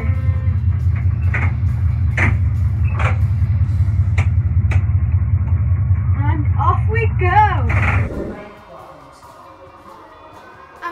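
Steady low diesel-engine rumble in a locomotive cab that cuts off suddenly about eight seconds in, with sharp clicks of the cab's switches and levers being worked about once a second.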